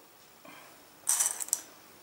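Dry pasta pieces clicking and rattling against each other as the pasta-covered paper cone is handled, a short high-pitched clatter lasting about half a second, starting about a second in.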